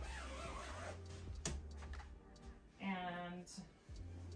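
Quiet background music with faint handling of a duvet cover, and a short hummed voiced note about three seconds in.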